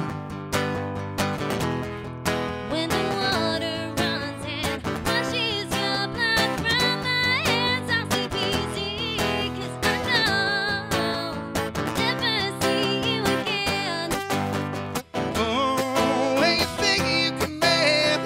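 Acoustic guitar strummed live under a country-style song, with singing over it.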